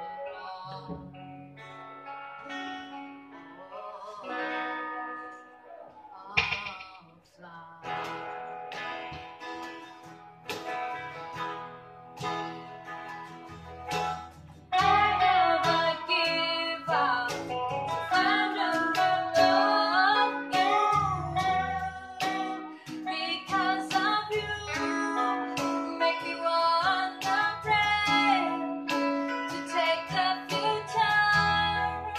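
A woman singing an original song, accompanied by two electric guitars, one strummed and one picking a lead line. The music grows louder about halfway through, when the singing comes in strongly.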